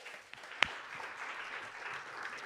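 Congregation applauding, with one sharp click a little over half a second in.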